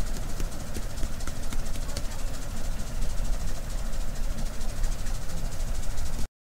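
Steady low rumbling background noise with faint scattered clicks, and no voice.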